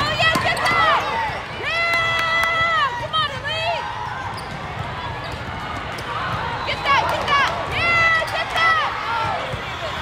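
Girls' high-pitched shouts and calls during a volleyball rally, including one long held call about two seconds in and a burst of calls near the end, with a few sharp hits of the volleyball, over the steady din of a busy hall.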